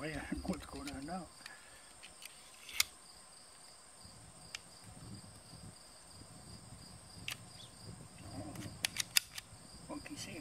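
Metallic clicks of a Zastava M57 pistol's slide being fitted back onto its frame: one sharp click about three seconds in, a couple of single clicks, then a quick cluster of louder clicks near the end. Crickets trill steadily behind.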